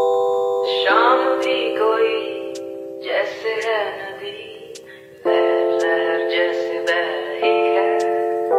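Background music: long held keyboard chords that change every second or two, with a wavering higher line sweeping over them through the first half.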